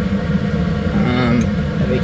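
Laminar flow cabinet's blower running steadily behind its filter, a constant low noise.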